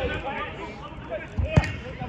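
A football struck on an artificial pitch: one sharp thud of the ball about one and a half seconds in, over players' voices.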